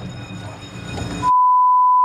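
Quiet car-cabin road noise, then, a little over a second in, a steady high-pitched censor bleep cuts in and replaces all other sound, masking speech.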